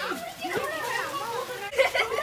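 Children's voices calling and shouting as they play, with a loud cry near the end.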